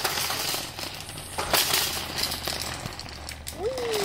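Nested wire shopping carts rattling and clanking as one is pulled out of the row, with a sharp knock about a second and a half in.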